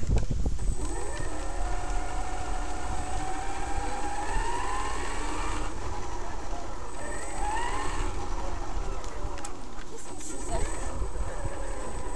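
Traxxas X-Maxx RC monster truck driving over a wooden boardwalk, heard through its onboard camera: a steady low rumble from the tyres and drivetrain. The brushless electric motor's whine rises in pitch about four to five seconds in, and again near eight seconds.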